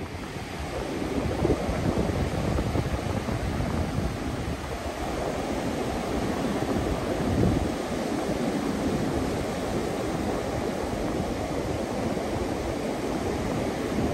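Ocean surf breaking and washing up on a sandy beach, a steady rushing wash, with wind buffeting the microphone.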